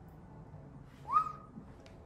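A single short whistle about a second in, sliding up in pitch and then holding briefly, over faint room tone, with a small click near the end.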